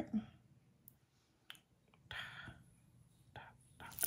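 Faint handling sounds at a craft table: a few soft clicks and a short, quiet rustle as paper pieces and a liquid glue bottle are handled.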